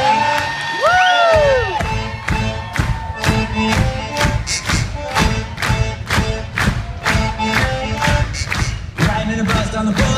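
Live rock band with accordion playing an instrumental passage, loud, as heard from the audience, with a crowd cheering. One rising-then-falling whoop comes about a second in, and a steady drum beat of about two hits a second starts about two seconds in.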